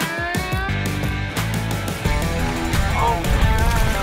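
Montage music with a steady bass line and a beat, opening with a rising sweep.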